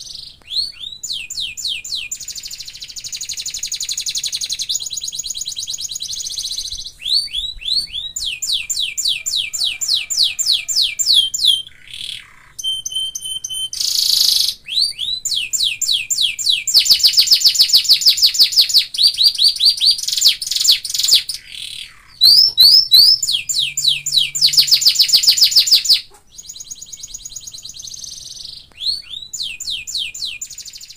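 Domestic canary singing: fast trills of rapidly repeated down-sweeping notes, switching to a new repeated phrase every few seconds, with short breaks about twelve and twenty-six seconds in.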